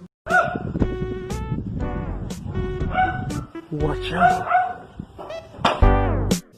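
A dog barking, with music playing.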